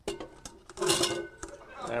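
Knocks and a clink as a clear solid model is lifted off a lecture desk and handled, with a louder clatter and brief ringing about a second in.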